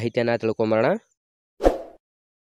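Speech that stops about halfway through, then a single short pop sound effect with a quick fading tail, the kind laid under an animated subscribe button.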